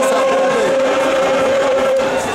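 Large choir holding one long sustained chord, released right at the end, in a poor-quality recording.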